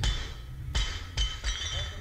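Barbell loaded with Rogue 45 lb bumper plates dropped from overhead onto gym floor mats: a strike as it lands, then three more bounces about a second in, each with a metallic clink and rattle of the plates and collars.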